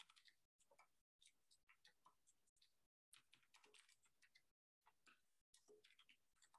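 Near silence: room tone with a few very faint, scattered clicks.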